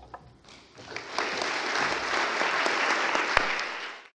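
Audience applause: a few scattered claps at first, swelling into full, steady clapping from about a second in, then cut off suddenly at the end.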